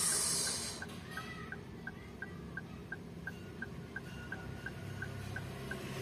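A car's electronic dashboard ticker sounding short high ticks at an even pace, about three a second, over the low hum of the idling engine. A brief rustle comes at the start.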